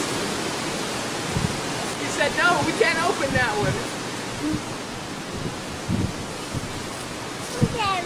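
Steady rushing noise on a handheld camcorder's microphone as the camera swings about, with a small child's high-pitched babbling a couple of seconds in and again near the end, and a few low handling thumps.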